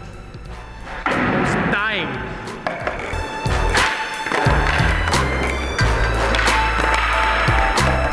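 Skateboard on a smooth concrete floor: the wheels rolling, then the tail popping and the board clacking down during a flip trick. Music with a heavy bass line comes in about three seconds in and plays over it.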